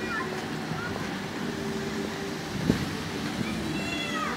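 Outdoor background of faint voices over a steady low hum, with a single knock about two and a half seconds in.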